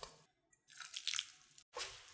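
A gloved hand squeezing and mixing flour and water into a rough dough in a glass bowl: soft wet squishing and crumbly rustling in a few short bursts, broken by brief silences.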